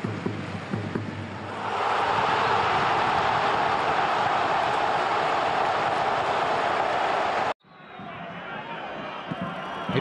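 Large stadium crowd cheering a goal: a steady roar that swells about two seconds in and cuts off suddenly near the end, leaving a quieter crowd murmur.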